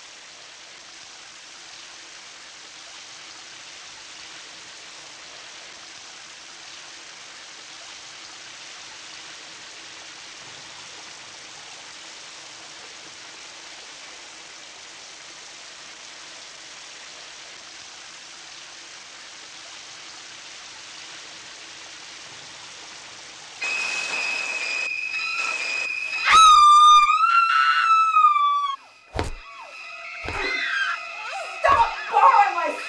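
Shower spray running steadily onto tile. About 23 seconds in, a high steady tone cuts in. A loud shrill shriek follows with curving, falling pitch, and then two sharp hits.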